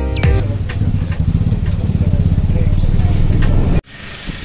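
A motor vehicle engine running at steady road speed, a fast even low pulsing with road and wind noise over it, after the tail of background music. It cuts off suddenly near the end.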